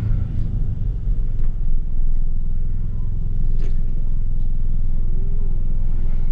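Pickup truck's engine idling, a steady low rumble heard from inside the cab while the truck stands still.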